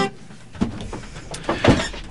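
Acoustic guitar's last ringing chord cut off with a sharp thump as the strings are damped, at the end of a song. Then a quiet stretch of room sound with a few soft knocks and clicks.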